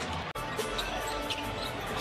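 Basketball game sound on an arena court: a basketball bouncing on the hardwood over arena music. There is a brief break in the sound about a third of a second in.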